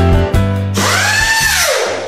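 Background music with a drum beat, cut off about three-quarters of a second in by an outro sound effect for the logo: a rushing whoosh with a whine that rises and then falls, fading out near the end.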